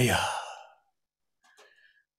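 A man's voice drawing out the last word of a Quechua invocation and trailing off into a breathy exhale that fades within the first second; then near silence, with a brief faint sound near the end.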